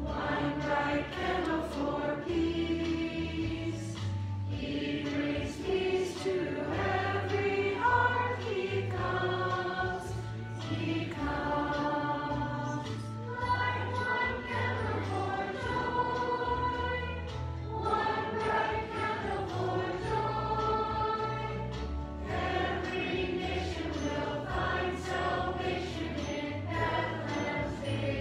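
Congregation singing a hymn with instrumental accompaniment, the voices moving through sung phrases over sustained low bass notes.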